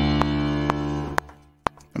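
House-piano chord from a software piano (Echo Sound Works house piano) played on a MIDI keyboard, held with a deep low bass, then fading out from about a second in. A regular click ticks about twice a second, in time with the 125 BPM project.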